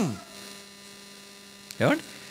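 Steady electrical mains hum from a public-address system, several even tones held level, in a gap between a man's amplified words. His voice trails off at the start and a short syllable comes in near the end.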